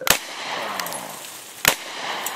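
Two sharp shots from a Beretta CX4 Storm 9mm semi-automatic carbine, about a second and a half apart, the first trailing off over about a second.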